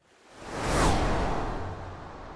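Cinematic whoosh sound effect for a title card. It swells over the first second with a deep rumble underneath and a falling sweep at its peak, then fades away slowly.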